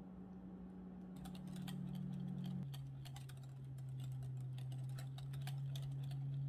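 Wire whisk clicking and scraping rapidly against a glass mixing bowl as a creamy mixture is beaten, the clicks starting about a second in. A steady low hum runs underneath and drops in pitch at about the same moment.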